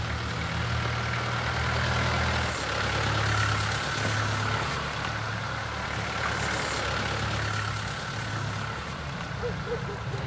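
A vehicle engine running, a steady low hum under a wash of traffic-like noise. It starts suddenly.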